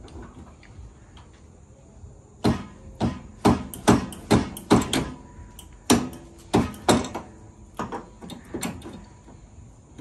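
About a dozen sharp metal-on-metal knocks, each with a brief ring, coming in quick runs from a few seconds in until near the end, while the rear axle is being worked into the Yamaha Kodiak 700's rear knuckle and hub.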